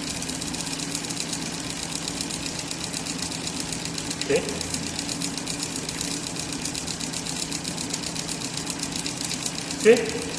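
Ignition-system trainer running at a raised speed: a steady motor hum with a fast, even ticking of the spark plug firing.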